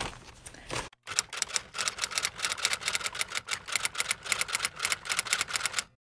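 A rapid, even run of sharp clicks, about eight a second, that starts after a brief cut to silence about a second in and stops abruptly just before the end, laid over a video transition.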